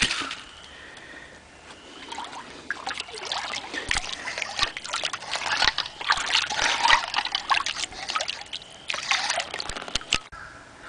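Shallow creek water sloshing and splashing in irregular bursts as someone wades and digs in the creek bed, with a few short knocks among the splashes. It is quiet for the first couple of seconds, and there is another burst of splashing near the end.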